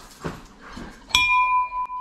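A black wall-mounted metal bell struck once about a second in, ringing on with a clear, steady two-note tone. It is rung to mark a 'dinger', a sale of $100 or more.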